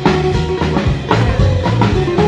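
Rockabilly band playing an instrumental break with no vocals: drum kit keeping a steady beat under electric guitar and bass.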